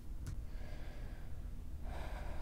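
A person breathing out in two soft, breathy sighs, with a small click just before the first, over a low, steady room rumble.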